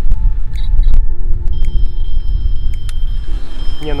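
Low rumble of wind on the microphone, loud throughout, under background music whose steady high tones come in about a second and a half in.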